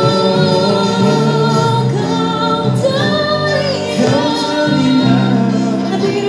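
A woman singing a song live into a microphone, holding long notes with vibrato, accompanied by keyboard and guitars.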